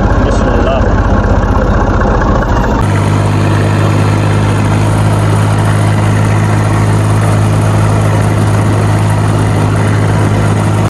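Tractor's diesel engine running loudly and steadily as the tractor drives along a road; its pitch shifts to a new steady level about three seconds in.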